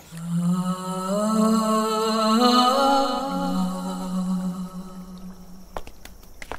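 A low wordless vocal chant, one long drawn-out note that rises a little in the middle and settles back down, fading out about five seconds in. A faint click comes near the end.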